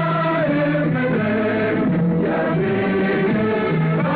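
A national anthem sung by a choir over instrumental accompaniment, in held, slowly moving notes.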